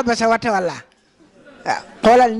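A man speaking through a handheld microphone, his voice sliding down in pitch and trailing off under a second in. After a short pause comes a brief rising vocal sound.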